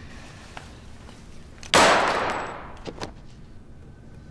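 A small explosive device at a man's collar goes off with a single sharp bang about two seconds in. A hissing tail fades over about a second, followed by a couple of faint clicks.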